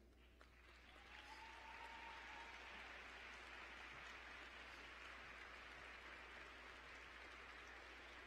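Faint applause from a large crowd in a big hall. It builds about a second in and then holds steady.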